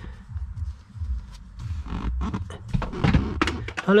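Nitrile-gloved hand rubbing and sliding over a leather car seat, in a series of short scratchy strokes in the second half, over an uneven low rumble.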